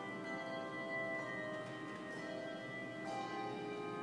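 Handbell choir playing a piece together: many bells ring in overlapping, sustained chords, with new notes struck about once a second.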